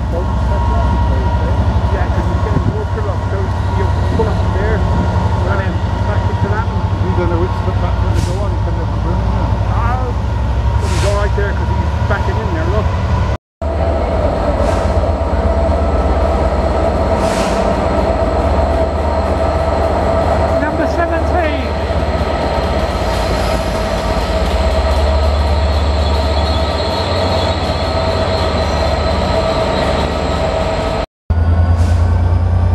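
Class 67 diesel locomotive engines running at a steady, loud, low drone. After a cut about 13 seconds in, a train passes close by with the same drone and a steady higher whine over it.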